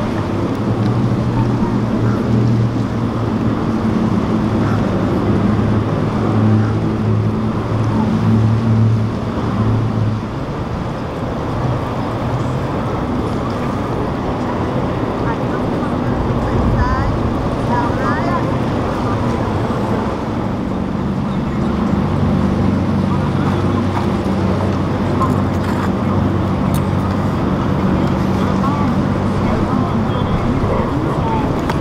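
Powerboat engines running at speed over the rush of spray and wind. One steady engine drone fills the first third, dies away about ten seconds in, and another boat's engines come in from about twenty seconds on, with voices in the background.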